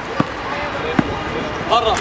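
A basketball bounced twice on a hard outdoor court, the two bounces about a second apart, with a short voice near the end.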